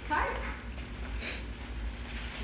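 A brief vocal sound falling in pitch, then faint crinkling of tissue paper in a gift bag as a mug is lifted out.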